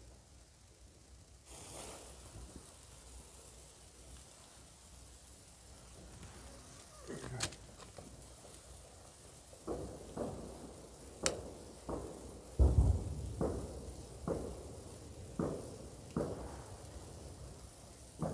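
A hand-held flare hissing as it catches and burns, with scattered sharp firecracker bangs going off, more of them in the second half and the loudest a little past two-thirds of the way in.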